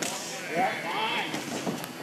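Spectators shouting and yelling, several raised voices overlapping without clear words.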